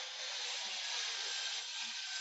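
Steady background hiss with no other event in it, a pause between spoken sentences.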